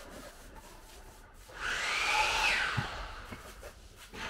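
A paintbrush rubbing liquid-applied waterproofing membrane (Laticrete Hydro Ban XP) onto a shower wall: one scrubbing stroke with a slight squeak, lasting about a second, starting about a second and a half in. Soft knocks follow.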